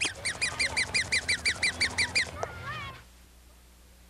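Rapid run of high-pitched squeaky duck quacks from a toy, about seven a second for two seconds. A couple of gliding squeaks follow, then it cuts off suddenly about three seconds in.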